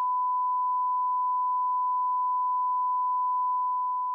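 A steady, unbroken electronic beep: one pure tone held at a single pitch, like a test tone.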